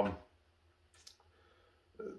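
Near silence in a small room, broken by one faint, short click about a second in.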